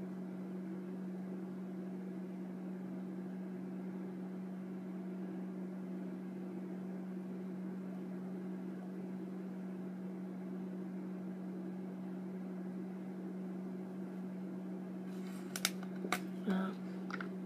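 A steady low mechanical hum with a constant low drone. About a second before the end come a few sharp plastic clicks as the clear cap is pulled off a pet dental spray bottle.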